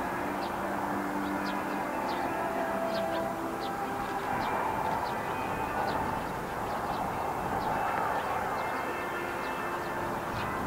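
A steady mechanical hum with several held tones that shift in pitch, under faint high chirps repeating about once or twice a second.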